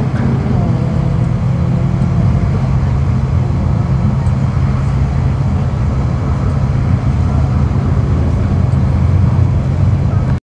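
Two cars accelerating away down a drag strip, their engine notes fading into the distance over a steady low rumble.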